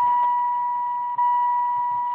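Steady high-pitched electronic warning tone from a 2004 Saturn Vue's instrument cluster, sounding as the key is switched to ignition and the dashboard warning lights come on.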